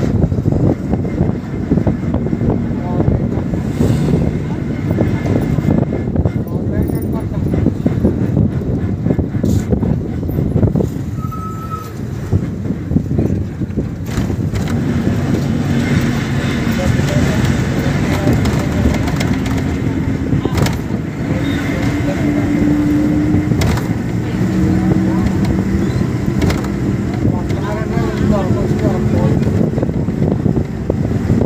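Bus running at speed on the road: steady engine and road noise with wind rushing past the side window. In the second half a steady engine tone stands out, stepping up in pitch.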